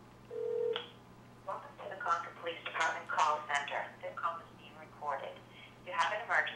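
A short steady beep on the phone line, then a recorded voice greeting from an automated phone menu, heard through a flip phone's speaker.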